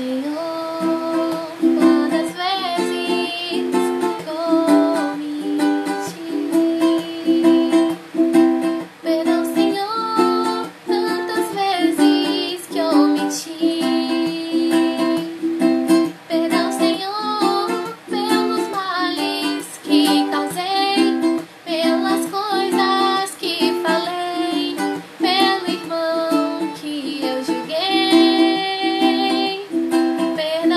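A ukulele strummed in a steady chord rhythm while a woman sings a song over it.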